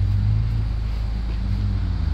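2015 MINI Cooper Clubman S's 1.6-litre turbocharged four-cylinder engine idling with a steady low hum, heard close to the exhaust.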